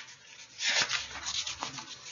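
Close-up rustling and rubbing noise made of many small scrapes and clicks, loudest from about half a second in.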